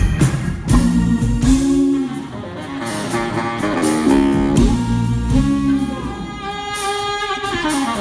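Live funk and soul band playing an instrumental stretch between vocal lines, with drum kit, bass and electric guitar.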